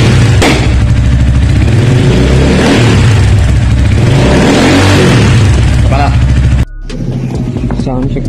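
Rusi Titan 250FI motorcycle engine running loud through an aftermarket slip-on exhaust and revved by hand at the throttle. The engine sound cuts off suddenly near the end, giving way to quieter voices.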